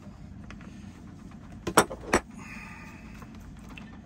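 Crescent wrench knocking and clicking against the plastic back cap nut of an MC4 solar connector as the nut is turned loose: two sharp knocks a little under two seconds in, then a brief scraping sound.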